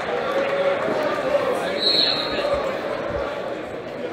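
Many voices chattering in a reverberant school gymnasium during a wrestling tournament. Dull thuds sound, and a brief high whistle comes about two seconds in.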